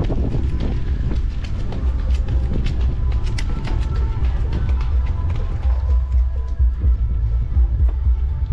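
Wind rumbling on the camera microphone of a moving bicycle on a dirt road, with rapid irregular clicking and rattling from the bike over the rough surface.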